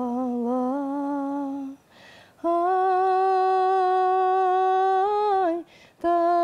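A woman singing unaccompanied in long held notes. The first note runs to a breath about two seconds in; then a higher note is held for about three seconds, falling away at its end before another breath.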